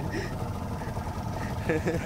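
Small open motorboat under way: its engine hums steadily under the rush of water and wind. A short bit of voice comes in near the end.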